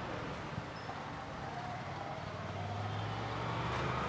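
Faint vehicle hum: a low, steady drone that grows slightly louder in the second half.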